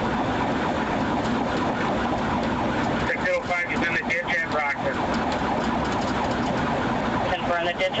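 Police cruiser driving at high speed, heard from inside the car: steady engine and road noise with the siren sounding over it.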